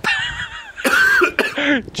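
A man coughing and hacking after vomiting a large amount of milk. A high, wavering vocal sound comes first, then two loud, harsh coughs about a second in.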